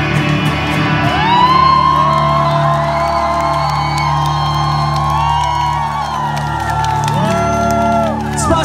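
A live rock band's electric guitar chord held and ringing out at the end of a song through the club PA. From about a second in, the crowd whoops and screams over it.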